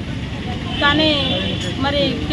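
A woman speaking Telugu, her words coming in short phrases with brief pauses, over a steady low background rumble.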